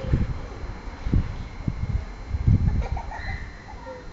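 Gusty wind buffeting the microphone in irregular low rumbles, with a few faint bird calls near the end.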